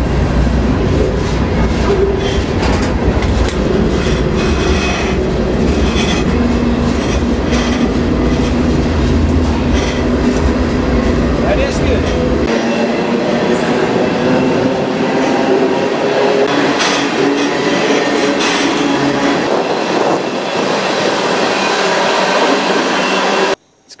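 Moving freight train heard from aboard one of its cars: a loud, steady rattle and rumble of wheels on rail, with frequent metallic clanks. The deep low rumble drops out about halfway through, and the sound cuts off just before the end.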